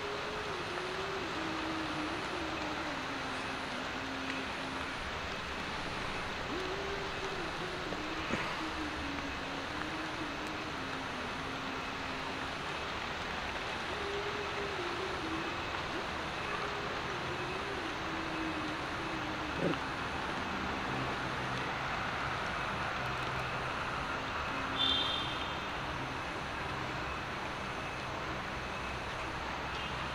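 Steady outdoor background noise with a low droning hum that slowly wavers up and down in pitch, in the manner of a distant engine; a short high chirp sounds near the end.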